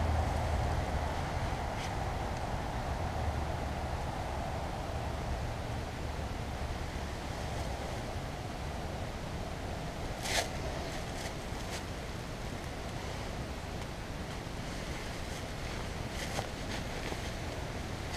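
Steady outdoor wind noise on the microphone, a little stronger in the first few seconds, with one short sharp click about ten seconds in.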